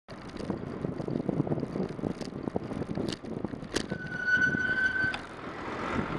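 Wind buffeting and road rumble on a bicycle-mounted camera in moving traffic, full of small knocks and rattles. About two-thirds in, a steady high-pitched squeal lasts just over a second.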